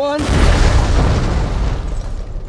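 A loud boom just after the spoken 'One', with a long rumbling tail that slowly fades.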